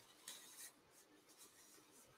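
Near silence: room tone, with a faint, brief rustle less than a second in.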